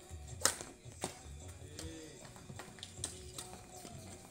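Badminton rackets hitting a shuttlecock during a rally: several sharp hits at irregular intervals, the loudest about half a second in.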